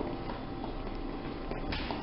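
Dräger Primus anaesthesia machine pressurising its breathing circuit during the self-check leak test: a low, steady hiss as gas is blown in to bring the circuit up to 30, with a short louder hiss of air near the end.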